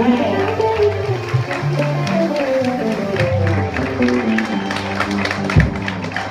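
A live band's song ending: the last chord rings off as the crowd cheers and applauds, the clapping growing thicker toward the end. A single low thump comes about five and a half seconds in.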